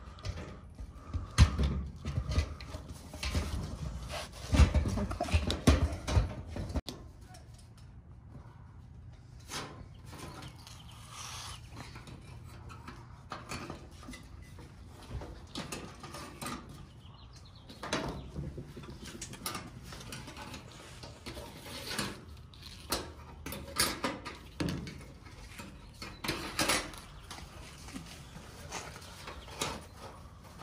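A fuel pump and sending unit assembly being handled and fitted by hand on a steel fuel tank: irregular knocks, rattles and rustling, louder and denser for the first several seconds, then scattered light clicks and clinks of the metal parts.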